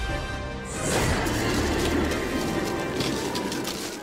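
Cartoon action score with sound effects: a rising whoosh about two-thirds of a second in, then a quick run of crashes and impacts over the music, which fades near the end.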